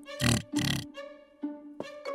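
Two short cartoon pig snorts about half a second apart, over soft background music.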